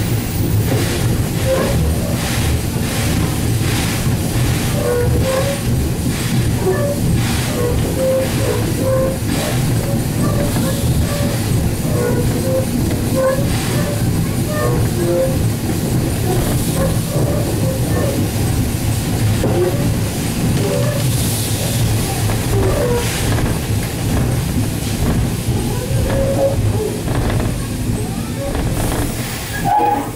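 Steam locomotive rolling slowly along the track, heard from the front of the engine: a steady rumble from the wheels and running gear, with regular clicks of the wheels over rail joints.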